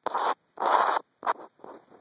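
Four quick scratching strokes in a row, the second the longest and loudest, the last two shorter and fainter.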